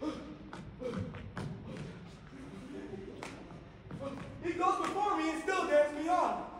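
Thuds and shuffling of actors' feet on a stage floor during a scuffle, with several sharp knocks in the first few seconds. Near the end comes a loud, drawn-out vocal cry.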